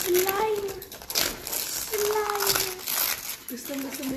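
Gift-wrapping paper crinkling and tearing in bursts as a present is unwrapped by hand, with a child's voice over it.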